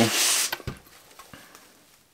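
A white laminated chipboard panel being handled and lifted off a foam-covered bench: a brief rubbing hiss, then a soft knock about two-thirds of a second in, followed by faint handling sounds.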